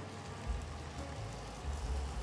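Faint, steady sizzling of barbecue-sauced ribs in a hot grill pan, with a low rumble underneath.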